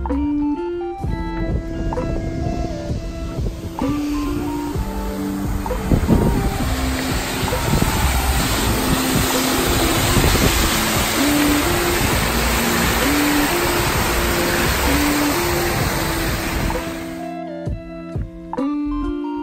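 Background music with plucked guitar notes over the steady rush of water flowing beneath a metal grated footbridge. The rushing starts about a second in and cuts off abruptly shortly before the end.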